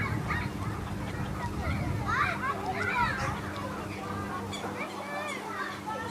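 Waterfowl calling, goose honks among them, mixed with distant visitors' and children's voices; a burst of overlapping calls about two to three seconds in is the loudest part.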